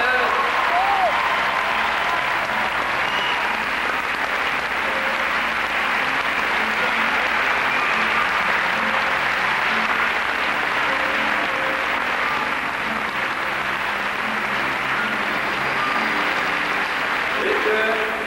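A large arena audience applauding steadily.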